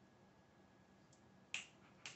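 Near silence, then a single sharp finger snap about one and a half seconds in.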